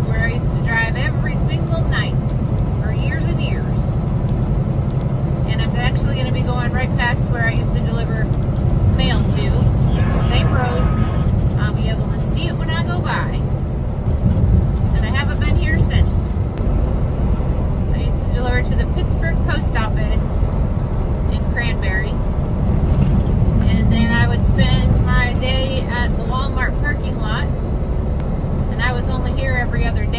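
Steady low drone of a Kenworth T680 semi truck heard from inside its cab at highway speed: engine and tyre noise, with a voice coming and going over it.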